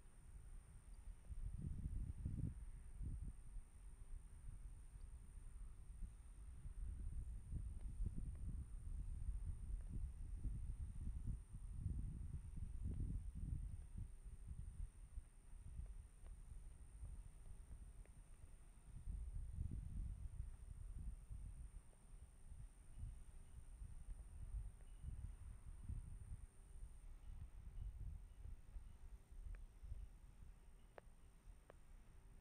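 Faint outdoor ambience: a low rumble that swells and fades unevenly every few seconds, with a faint steady high-pitched whine running underneath.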